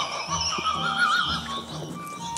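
A woman's high-pitched laugh, a warbling trill that wavers up and down several times a second and stops about a second and a half in.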